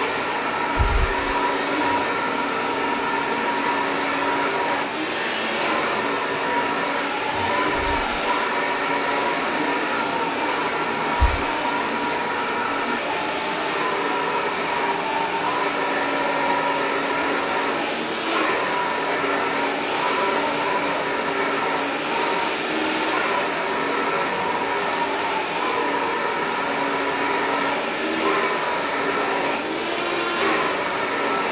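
Handheld hair dryer running steadily while blow-drying hair, a rush of air with a steady motor whine. A few dull low knocks come in the first dozen seconds.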